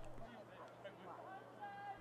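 Faint distant voices calling out, with a few brief pitched calls in the second half, over a low steady hum.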